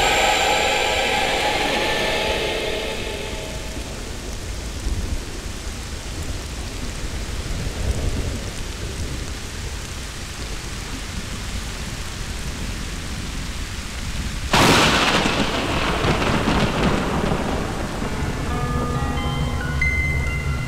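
Steady rain with low rolling thunder, then a sudden loud thunderclap about fifteen seconds in that rumbles away into the rain.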